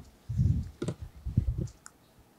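Mouth clicks and breathing of a man pausing between words, picked up close on a podium microphone: a soft low thump about half a second in, then three or four short, sharp clicks.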